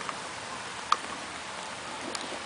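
Steady light rain hiss, with one sharp tap about a second in.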